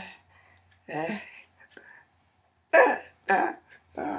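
A woman's voice making short wordless vocal outbursts: one about a second in, then two louder ones in quick succession near the end.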